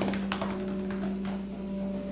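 A few light taps in the first half second, over a steady low hum.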